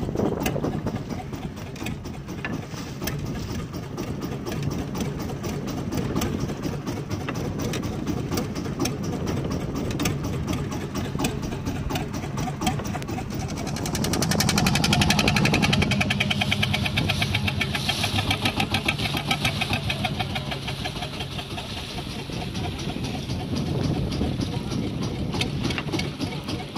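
A small fishing boat's engine running with a fast, even beat; about 14 seconds in it picks up and grows louder for several seconds as the boat gets under way, water splashing along the hull, then eases back.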